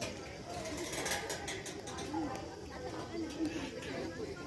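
Background chatter: several people talking indistinctly at a distance, no single voice standing out.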